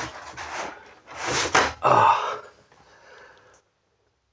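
An RV window's pull-down mesh screen shade being drawn down from its valance: a rustling, rubbing noise in two stretches, the second louder. A man gives a short 'ah, uh' about two seconds in.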